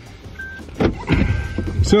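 A quiet electric car's reverse-gear warning tone, a thin steady tone that comes in about a second in as the car is put in reverse. There is a knock and some rustling in the cabin.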